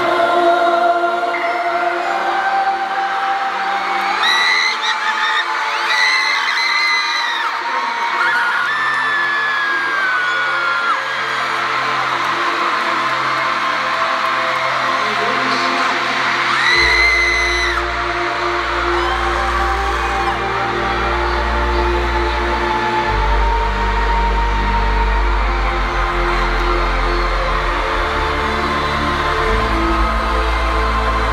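Live concert music through an arena sound system: a slow intro of long held tones, with a deep bass coming in about halfway through. Crowd screams rise over it now and then.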